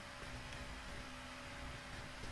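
Faint steady hiss of the recording's background noise, with a faint steady hum: room tone.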